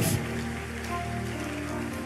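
A congregation clapping steadily, heard as an even patter, over soft sustained background music.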